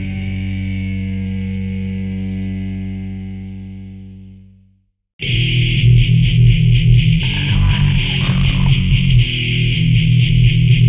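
Heavy metal home recording on a four-track cassette: a held guitar chord rings out and fades to silence about five seconds in, the end of one song. After a brief gap the next song starts loudly, with distorted electric guitar, bass and drums.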